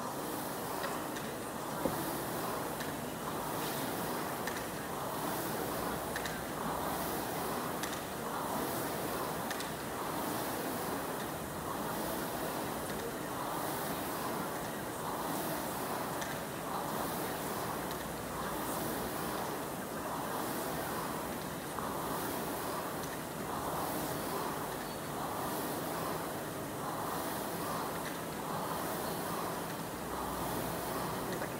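Air-resistance rowing machine flywheel whooshing with each drive stroke, a regular surge about once every two seconds at a steady rowing pace.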